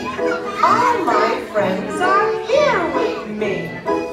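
A children's song with music and singing voices, mixed with young children's voices.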